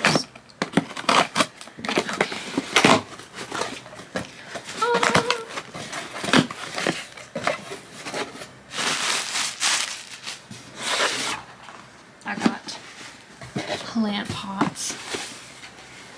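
A cardboard shipping box being opened by hand: the packing tape is slit and torn, the flaps are pulled open, and paper packing crinkles, giving a run of irregular scraping, tearing and rustling noises.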